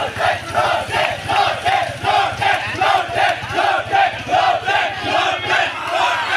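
A crowd of men chanting a slogan in unison, loud, a steady rhythm of about two to three shouts a second, in celebration of an election win.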